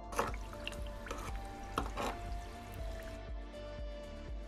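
Warm water poured from a metal kettle into a small bowl of clay powder, trickling and splashing with a few sharp splashes, stopping about three seconds in. Background music with a steady beat runs underneath.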